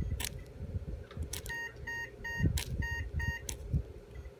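A run of about six short electronic beeps, in two groups of three with a brief pause between, from a device in the room. Sharp clicks and low handling noise sound around them.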